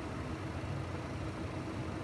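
Steady hiss of heavy rain on a parked airplane, heard from inside the cabin, over a steady low hum.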